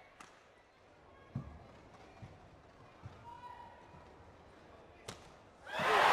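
Badminton rally: a series of about five sharp racket strikes on the shuttlecock, roughly a second apart, the loudest about a second and a half in. Near the end the arena crowd suddenly bursts into loud cheering as the rally ends.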